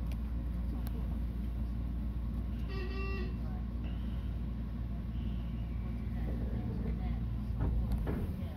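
Steady low rumble and hum of a Meitetsu 3100 series electric train just after its doors have closed, with a brief toot-like tone about three seconds in.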